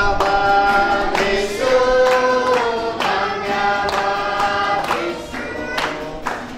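A group of voices singing a song together in held notes, with a strummed acoustic guitar accompanying them.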